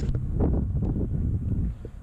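Wind buffeting the microphone with a low rumble that dies down near the end, over a few crackles of dry pine needles and leaves as a hand rummages through them.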